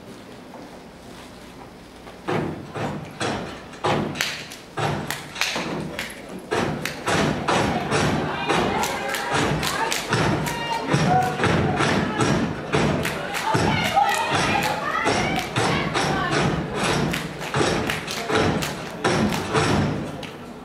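Step team stepping: rhythmic foot stomps on a stage floor and hand claps in fast, syncopated patterns, starting about two seconds in.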